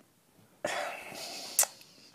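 A person's breathy throat sound, starting sharply and fading over about a second, with a short mouth click just before the next words.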